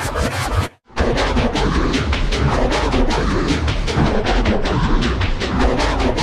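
Heavily distorted, effects-processed pop music, a dense harsh wash with a fast pulsing texture. It cuts out briefly just under a second in, then carries on.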